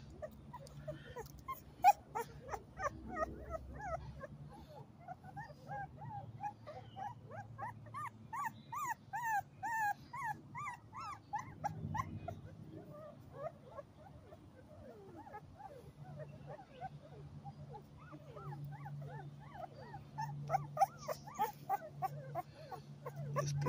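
A two-week-old pit bull puppy crying in a long run of short, high-pitched whimpers and squeals. The cries come most thickly in the middle, while it squirms in the hand.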